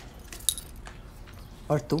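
A few light metallic clinks and a jingle, the sharpest about half a second in, with a man's short spoken words near the end.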